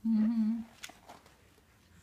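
A short hummed "mm" from a voice, held on one steady pitch for about half a second, followed by quiet with a faint click.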